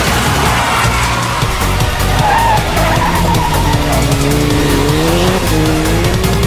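Music with a pulsing bass beat, overlaid with race-car sound effects: a skid or tyre squeal early on, then an engine note rising in pitch, dropping and rising again near the end, like revving up through a gear change.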